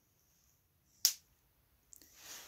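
A single sharp click about a second in, as the glowing mechanical-pencil-lead filament of a homemade jar light bulb breaks and the light goes out.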